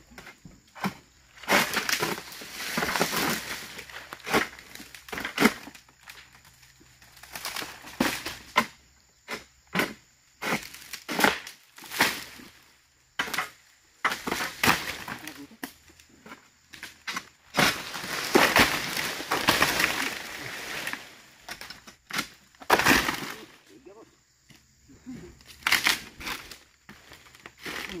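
Oil palm fronds being cut with a long-pole harvesting sickle (egrek): a long run of sharp cracks and crackling, rustling crashes as dry fronds are cut and fall through the undergrowth.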